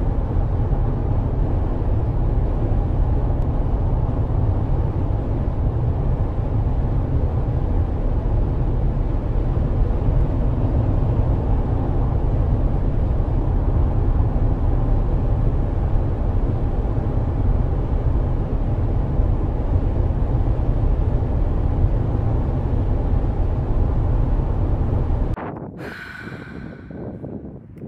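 A steady, loud low rumble with a fainter hiss above it, with no beat or tune, that cuts off suddenly near the end.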